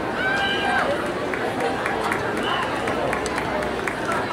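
Stadium crowd noise: many voices talking and calling out from the stands, with scattered sharp claps, before the marching band begins to play.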